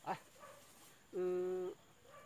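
A man's voice: one drawn-out, level hesitation sound, held for about half a second a little past the middle, after a short click at the start.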